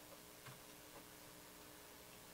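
Near silence: room tone with a faint steady hum and a couple of faint clicks about half a second and a second in.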